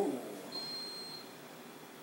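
A single short, high-pitched electronic beep, one steady tone lasting under a second, starting about half a second in.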